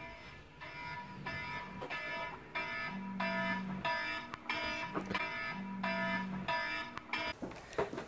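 A wake-up alarm ringing: a repeating electronic beep pattern, about two beeps a second, that stops near the end.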